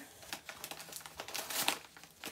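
Paper wrapping around a shipped plant crinkling and rustling as it is handled and opened, a run of quick irregular crackles, loudest a little past halfway.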